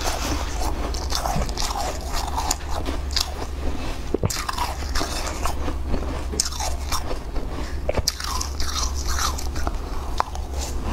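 Irregular crisp crunching of shaved ice as a metal spoon digs into a heaped bowl of it and it is bitten and chewed. A steady low hum runs underneath.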